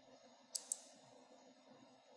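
Two quick, sharp clicks close together about half a second in, over faint steady background noise.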